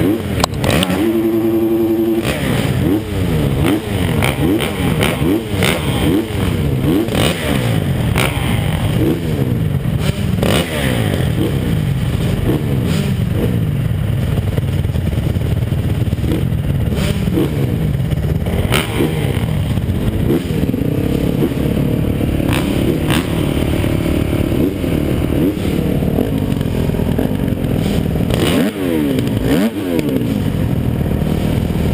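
Motocross bike engines revving up and down over and over, the pitch rising and falling in quick sweeps, several engines overlapping, with scattered knocks and rattles.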